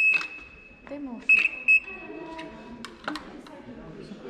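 Electronic buzzer of a buzz-wire steady-hand game: a steady high-pitched tone that cuts off just after the start, then two short beeps a little over a second in, each sounding when the metal wand touches the wire and closes the circuit.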